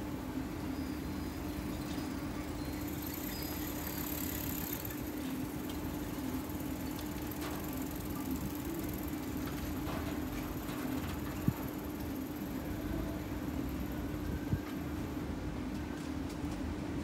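Steady outdoor street background with a constant low hum and a faint wash of traffic noise, broken by two short sharp clicks in the second half.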